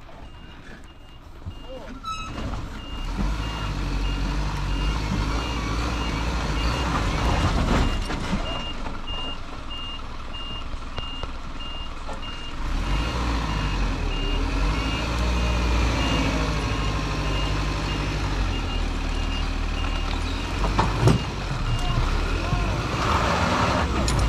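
Four-wheel-drive tow vehicle reversing in low range under load, its engine running with the revs rising and falling, while its reversing beeper sounds over it in a steady run of high beeps from about two seconds in.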